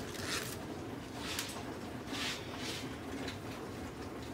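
Crisp iceberg lettuce leaves crinkling and rustling as a head of lettuce is handled, in several short bursts.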